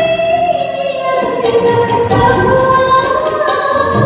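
Woman singing a Telugu Christian worship song live, with a band accompanying her.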